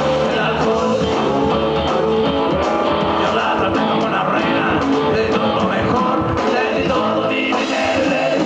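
Live rock band playing a song: electric guitars, bass guitar and a drum kit, loud and continuous.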